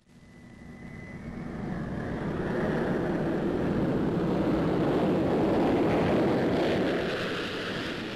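Jet aircraft taking off and flying past: a rushing engine noise that builds up out of silence over the first few seconds, peaks, and begins to fade near the end. A thin high whine sounds in the first second.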